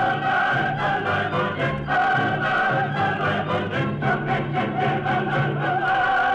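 Operatic chorus singing with orchestra in sustained phrases, from a 1940s radio transcription recording.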